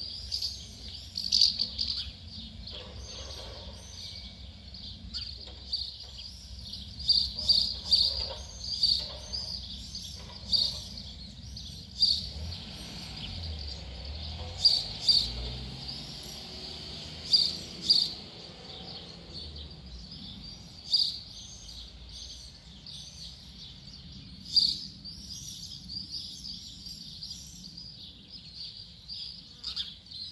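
Small birds calling in short, sharp chirps, many in quick clusters with louder bursts scattered through, over a low steady rumble.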